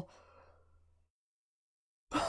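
Near silence. A faint low hum stops about a second in, followed by dead silence.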